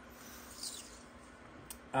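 Faint steady hum and hiss of a mini fridge's cooling fan running, with a single light click near the end.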